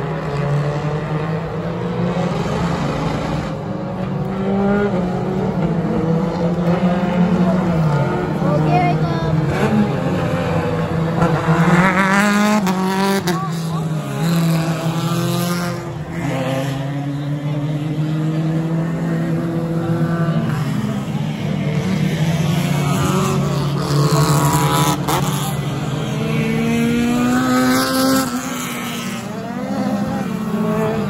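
Race car engines running as cars lap the circuit, the engine note rising and falling as cars accelerate and pass. It is loudest about twelve seconds in and again near the end.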